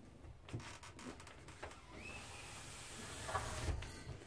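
Faint taps and rubbing from a cat's paws stepping across a loose wooden board, with a brief high squeak about two seconds in and a few louder knocks near the end.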